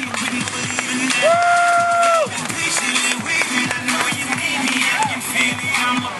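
Music played over outdoor loudspeakers, with a long held note about a second in.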